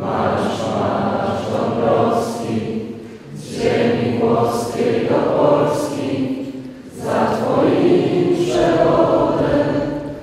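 A choir singing in long, held phrases, with short breaks between them about three and a half and seven seconds in.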